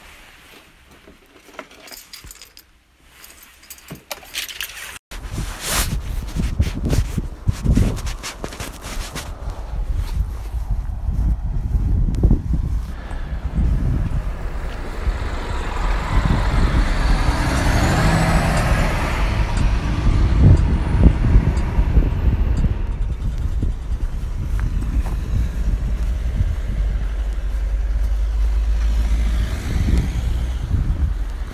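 Fabric rustling from handling, then, from about five seconds in, street traffic: a car going past on a wet, slushy road, its noise swelling and fading, with wind rumbling on the phone microphone.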